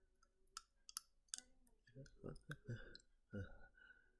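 Near silence, broken by a few faint, sharp clicks in the first second and a half and a few brief, soft sounds from a man's voice later on.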